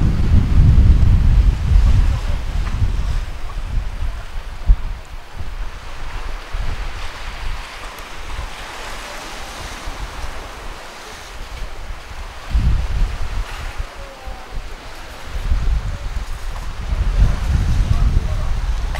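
Wind buffeting the microphone in gusts, heaviest at the start, briefly about two-thirds of the way through and again near the end, over the steady wash of sea waves on a rocky shore.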